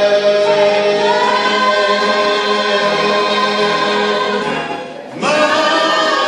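A vocal group singing together in harmony, holding long sustained chords. The sound drops away briefly about five seconds in, then a new chord starts.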